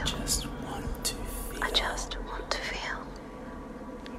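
Several whispering voices overlapping in a layered collage, breathy and hissing, with no clear words, over a low steady hum.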